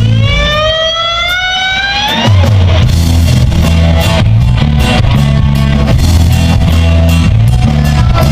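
Blues-rock band playing live with electric guitars, bass, drums and organ. For about the first two seconds the band thins out under one long electric guitar note that rises slowly in pitch, then the full band with bass and drums comes back in.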